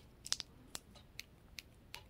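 Smartwatch side button and crown being worked by a thumb: about six faint, short clicks spread irregularly over two seconds.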